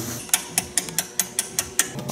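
A hand ratchet clicking quickly, about ten clicks at roughly six a second.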